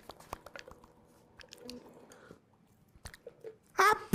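Faint, scattered clicks and mouth noises, like someone chewing close to a microphone, in an otherwise quiet stretch. Laughter breaks in just before the end.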